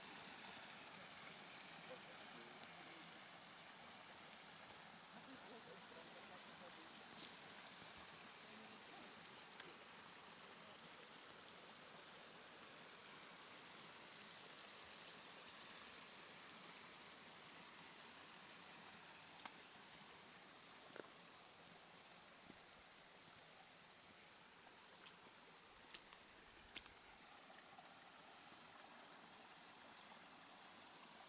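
Faint, steady trickle of a small forest stream flowing over stones, with a few scattered light clicks.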